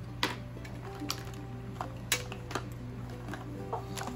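Background music with held tones, over which come several short, sharp clicks and taps as small art supplies are handled on a desk: plastic water brushes and a cardboard box of swatch cards being picked up.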